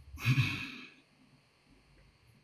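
A person sighing: one breathy exhale, under a second long, just after the start.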